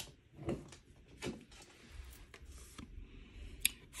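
Faint handling noises as a fallen oracle card is retrieved and lifted: four or five soft rustles and light taps spread through a quiet room, with a sharper click near the end.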